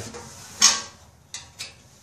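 A small sheet-steel tent stove being handled and turned over, giving one sharp metallic clack a little over half a second in and two lighter clicks about a second later as its loose metal parts knock.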